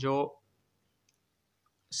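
A single spoken word, then a pause of near silence broken by a couple of faint clicks.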